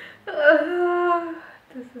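A woman's voice humming one long, steady note that lasts about a second, followed by the start of a spoken word.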